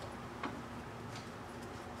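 Quiet room tone with a steady low hum, broken by a sharp light click about half a second in and a fainter click a little past a second.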